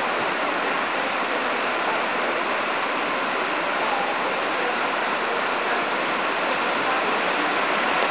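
Heavy rain falling steadily onto a flooded concrete yard, an even, unbroken hiss.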